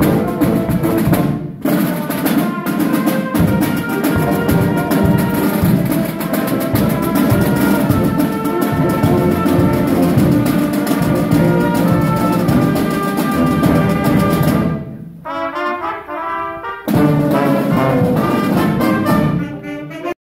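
Marching showband playing: trumpets, trombones, sousaphone and saxophones over snare drums and a bass drum. Near the end the drums drop out for a couple of seconds of softer held brass notes, then the full band comes back in.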